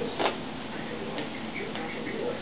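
A sharp knock about a quarter second in, then a few faint ticks, as a cat paws and grabs at a shoe.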